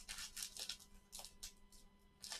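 Paper-foil trading-card pack wrapper being torn open and crinkled by gloved hands: a quick run of short, faint rips and rustles, several a second.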